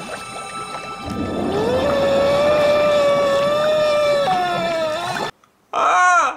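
A man's long, held scream of horror: it rises at first, holds one pitch for about three seconds, steps higher near the end and cuts off suddenly. A second, short yell from another man comes right at the end.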